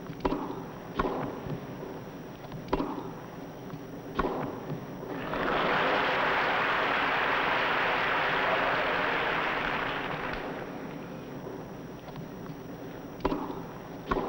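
Tennis ball struck by rackets in a rally: sharp hits about a second or two apart in the first four seconds. Then crowd applause builds for about five seconds and fades, with one more hit near the end.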